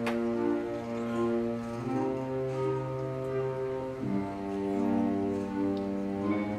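Concert band playing slow, sustained chords that shift about every two seconds, with a single percussion stroke right at the start.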